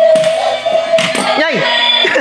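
Battery-operated Dalmatian puppy toy playing its electronic song: a long held sung note, then a short swooping voice about one and a half seconds in.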